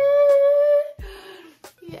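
A woman singing one long, steady high note as a little fanfare, which stops about a second in; then a few soft thumps.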